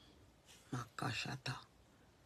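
A woman praying under her breath: a few hushed, whispered words about two-thirds of a second in, much quieter than her spoken prayer.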